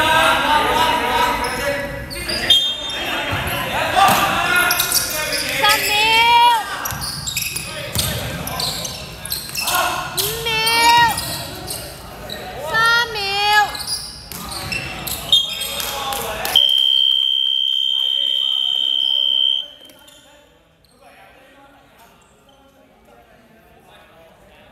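Basketball game play with the ball bouncing and players calling out, then the end-of-quarter buzzer sounding one steady high tone for about three seconds as the game clock runs out; the hall goes quiet after it.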